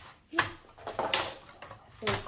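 A few scattered clicks and knocks of plastic slot-car track base plates being pressed and fitted together by hand.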